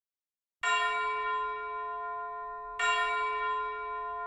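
A bell-like chime struck twice as an intro sting, first about half a second in and again about two seconds later, each strike ringing on and slowly fading.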